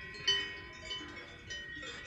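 Alpine cowbells on grazing cows, several bells ringing together at different pitches, with a fresh clang now and then.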